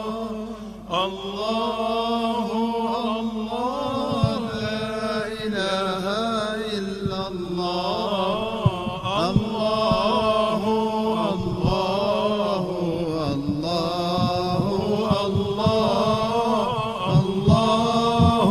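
Arabic devotional chanting of praise (hamd o sana): a voice sings long, drawn-out melismatic phrases over a steady low held note.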